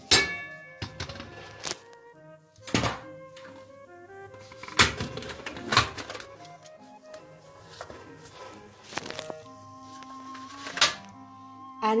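Several sharp knocks and clicks of a quick-cooking pot lid being set on a stainless steel pot and locked in place, over background music.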